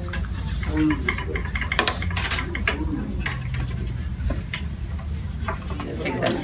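Scattered light clicks and taps of rulers and pencils on plastic-topped school desks, over a steady low hum and faint, broken classroom voices.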